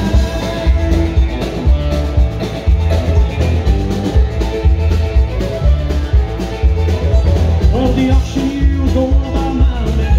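Live country band playing with a steady drum beat, fiddle, guitar and keyboard, amplified through the stage speakers.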